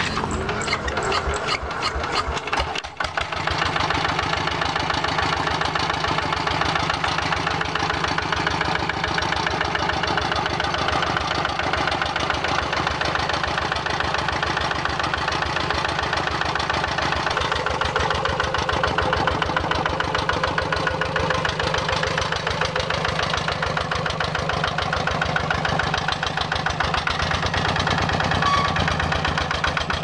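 Kubota single-cylinder diesel engine on a two-wheel walking tractor being started. It turns over unevenly for about three seconds, then catches and settles into a steady, even idle.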